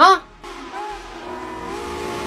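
A brief vocal yelp right at the start, then faint steady tones that slowly grow louder as a steam locomotive approaches on the track.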